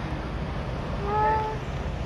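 Street background with a steady low traffic hum. About a second in there is one short, high, slightly falling call whose source is unclear.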